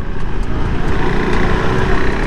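Motorcycle running steadily at a low city cruising speed, heard from the rider's seat with road and wind noise.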